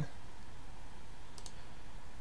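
Two quick, faint clicks of a computer mouse about halfway through, over a steady low room noise.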